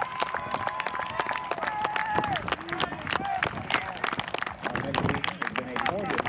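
Scattered hand clapping from a crowd and a line of teammates, irregular and continuous, with voices calling out over it.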